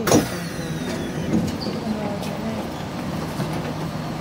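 Steady hum inside an MRT train carriage, with a sudden bump and whoosh right at the start and a faint whine falling in pitch over the first second.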